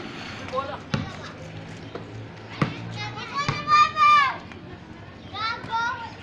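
Young players shouting during a street basketball game, with a long loud call in the middle and another near the end, while a basketball bounces on concrete a few times.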